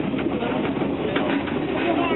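Steady running noise heard from inside the carriage of a moving passenger train.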